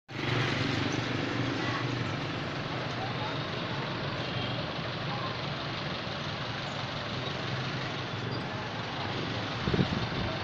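Street traffic: a motor vehicle engine running steadily close by over general road noise, with voices in the background. A short low bump near the end.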